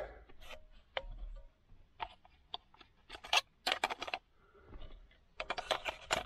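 Hard plastic clicks and scrapes as the round gauges are handled and shifted in a Volvo 240 three-dial accessory gauge pod. The clicks come irregularly, in quick runs about three to four seconds in and again near the end.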